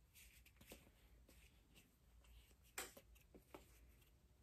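Near silence with faint handling noises as a rubber flip-flop strap is worked into the hole of a foam sole: a few soft clicks, the clearest about three seconds in.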